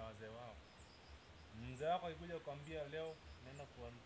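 A man talking in Swahili in short phrases outdoors, with faint high chirps in the background.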